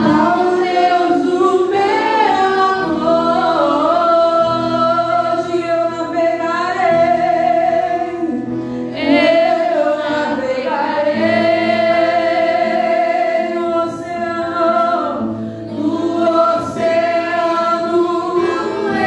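Live gospel worship music: two women singing into microphones in long held lines, accompanied by acoustic guitar and a drum kit.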